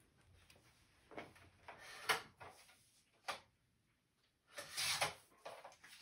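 Faint handling of paper sheets on a table: a few soft rustles and slides, a light tap a little after three seconds in, and a longer swish of paper near the end.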